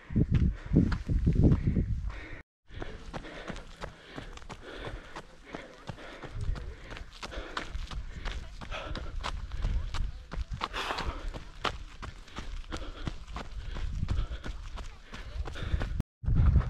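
A runner's footsteps on a dirt path, with breathing and low rumbling on the microphone for the first couple of seconds, then a string of light, regular footfalls.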